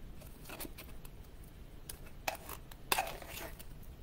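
A utensil scraping and clicking faintly against the inside of a tin can as apple pieces in the pie filling are cut up. There are a few light metallic scrapes and taps, spread out over a few seconds.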